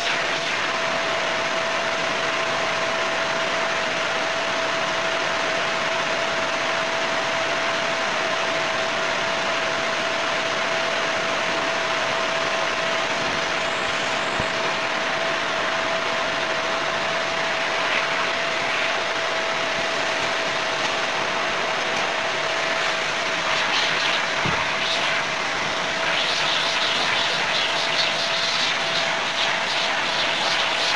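A canister vacuum cleaner running steadily, its motor giving a constant whine, with two brief knocks, about halfway and about four-fifths of the way in.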